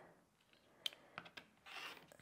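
Rotary cutter blade rolling through layers of cotton quilting fabric against a cutting mat, a short faint rasp near the end. A light click and a few small ticks of handling come before it.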